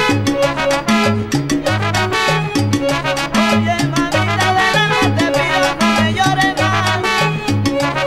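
Instrumental salsa with no singing: a stepping bass line under dense, steady percussion, with the band's instruments playing above it.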